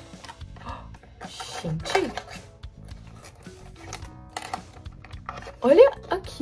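Cardboard perfume box being opened by hand: scattered light rustles and clicks of paper and card as the flaps and insert are folded back. Two short vocal exclamations, about two seconds in and near the end, are louder than the rustling, over faint background music.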